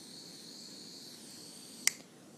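Cooking torch hissing steadily with a thin high whistle, then a single sharp click near the end, after which the hiss dies away.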